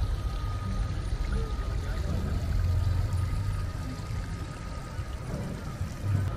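Water running down a small artificial rock cascade into a pond, a steady splashing, with music and a low rumble underneath.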